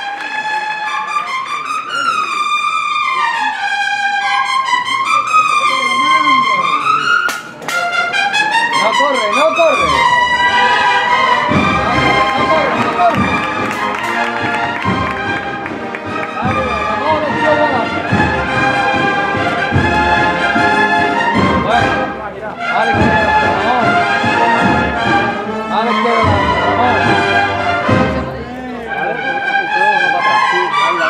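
Brass band playing a processional march: a trumpet-led melody alone at first, then drums and the full band come in about ten seconds in.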